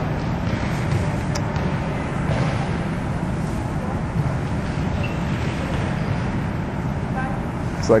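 Steady background noise of an indoor gym: an even low hum with hiss, no speech.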